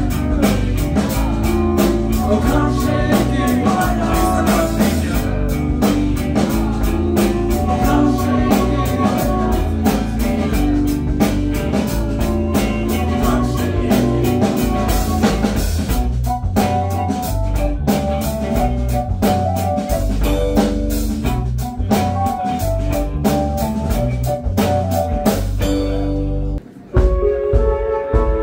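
Live rock band playing: electric guitar, bass and drum kit with a steady driving beat. Near the end the band stops abruptly, and a few sustained guitar notes then ring on without drums.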